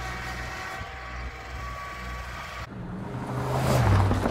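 Kubota L3901 tractor's three-cylinder diesel engine running steadily, getting louder toward the end.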